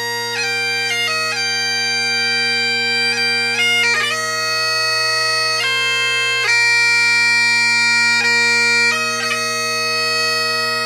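Bagpipes playing a slow melody over steady, unchanging drones, with quick grace notes flicking between the melody notes.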